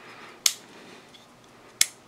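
Two sharp metallic clicks, about half a second in and near the end, from the button lock and safety of a closed Andre De Villiers Pitboss 1 flipper folding knife as they are worked by thumb.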